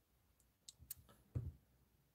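A few faint, separate clicks on a computer keyboard, bunched within about a second, the last the loudest.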